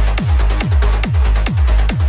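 High-energy trance track at about 140 beats per minute: a deep kick drum on every beat, about five in two seconds, under a steady bass line and synth layers.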